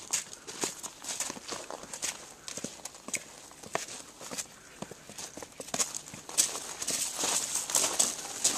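Footsteps of several people walking down stone steps and onto a gravel-strewn path: irregular hard heel clicks, with denser scuffing and crunching near the end.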